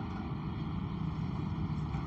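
Steady background noise: an even low rumble and hiss with a faint hum, with no distinct events.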